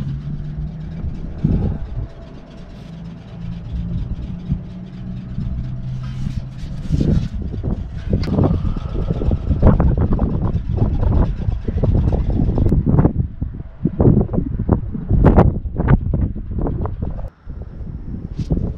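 A motor vehicle engine running steadily for about the first six seconds, then a run of irregular knocks and clatter from parts and tools being handled.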